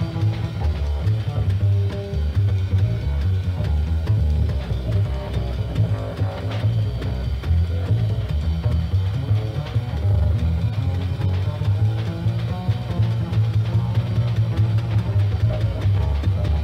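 Live small-group jazz: a plucked double bass plays a busy line to the fore, accompanied by a drum kit.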